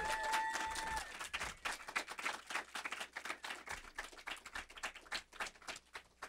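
Audience applauding at the end of a story reading, with a held whoop in the first second; the clapping is dense at first and thins out toward the end.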